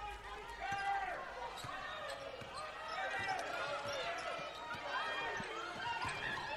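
Live basketball game sound from the court: a basketball dribbling on the hardwood floor under a low murmur of many voices in the arena.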